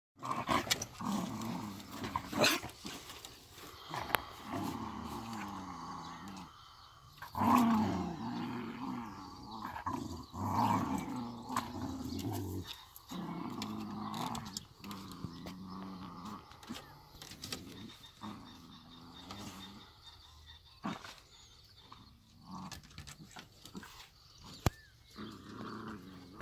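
Several small dogs growling at close range, in long wavering stretches through the first half and in shorter, scattered growls later on.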